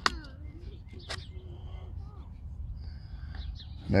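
Faint outdoor background: birds chirping over a low steady rumble, with a single sharp click about a second in.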